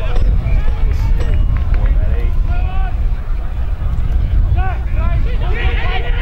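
Distant shouts and calls from Australian rules football players and spectators, coming more often near the end, over a steady low rumble of wind on the microphone.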